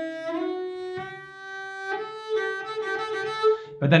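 Cello played with the bow: a few long notes stepping upward, sliding up into the second note and stepping up again about two seconds in. It demonstrates a left-hand finger stretch, the hand moved forward to widen the spread.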